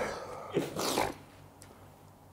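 A man's short, breathy whimpering sounds, two quick bursts about half a second and a second in, from the burn of the hot sauce he has just eaten.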